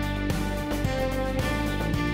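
Instrumental opening theme music of a television drama: sustained held notes over a steady beat.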